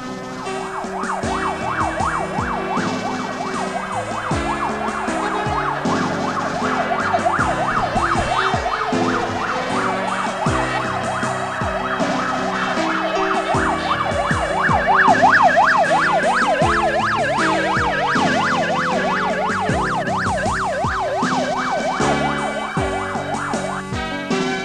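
Convoy vehicle siren in a rapid yelp, its pitch sweeping up and down several times a second, rising to its loudest and widest sweeps about two-thirds of the way through, over background music with a beat.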